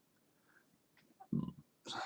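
Near silence, then about a second and a half in a single short, low throat noise from a person, followed at once by an apology.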